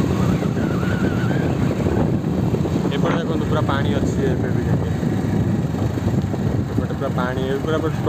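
A small vehicle engine running steadily with a rough low rumble of wind on the microphone, as the recorder moves along.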